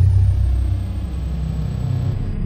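A loud, steady low rumble from an outro sound effect laid over the closing card. It sets in suddenly, with a faint high tone gliding downward at the start.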